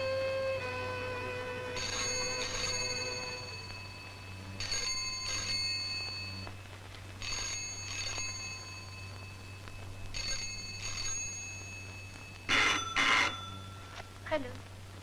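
Rotary-dial desk telephone ringing in repeated double rings, a pair about every three seconds, the last pair the loudest. Held notes of background music fade out in the first few seconds.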